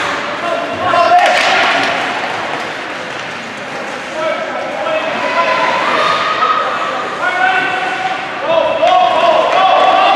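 Ice-hockey game sounds in an echoing rink: a sharp knock about a second in, then high voices calling out that grow louder toward the end.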